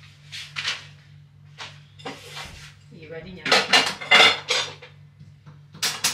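Metal spoons and cutlery clinking and clattering as they are handled, with a quicker, louder run of clinks about three and a half seconds in.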